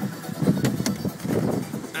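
The boat's 3.8-litre V6 sterndrive engine idling, under an uneven low rumble of wind buffeting the microphone, with a couple of light clicks just under a second in.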